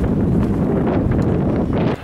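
Wind buffeting the camera microphone: a loud, steady low rumble that cuts off suddenly at the end.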